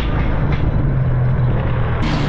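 Yamaha Banshee 350 ATV's two-stroke twin engine idling steadily.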